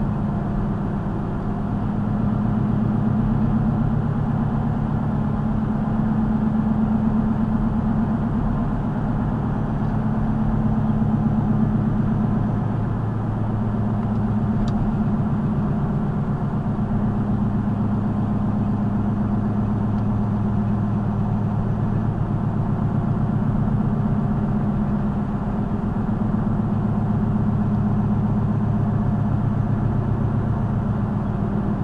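Car cabin noise while cruising at a steady 42 mph: an even drone of engine and tyre noise that holds level throughout.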